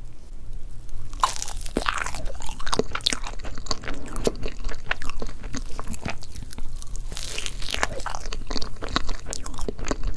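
Close-miked eating sounds of a milk crepe cake. There is a bite about a second in and another around seven seconds, each followed by chewing, heard as dense clusters of small clicks and mouth sounds.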